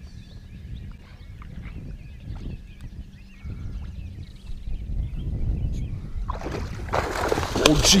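A musky strikes a bucktail lure right beside the boat, the fish thrashing at the surface in a loud splash. The splashing starts about six seconds in and is loudest near the end, over a low wind rumble.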